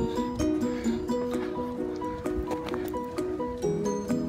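Background music: a light plucked-string tune, played note by note in a steady repeating pattern.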